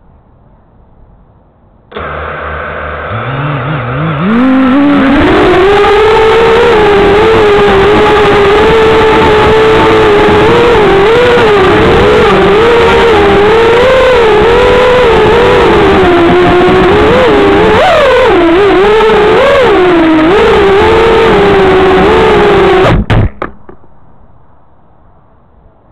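FPV quadcopter's brushless motors and propellers whining, heard through the onboard camera: about two seconds in they spin up with a rising pitch, then the whine wavers up and down with the throttle. Near the end it cuts off abruptly with a few knocks as the quad comes down on its side.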